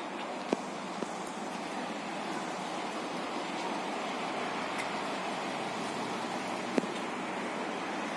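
Steady hiss of outdoor background noise, with a few short clicks, the loudest two about half a second in and near the end.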